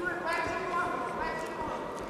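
Voices shouting in a large hall, drawn-out high calls that carry across the room.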